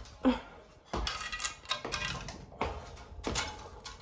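Irregular knocks and metallic clinks, a few each second, from a steel-framed staircase with wooden treads as someone climbs it.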